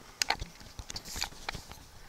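A few light taps, the loudest about a quarter second in, followed by faint scattered ticks over quiet room tone.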